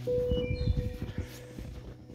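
Footsteps plodding through deep snow, a run of irregular soft thuds, under background music that holds one sustained note.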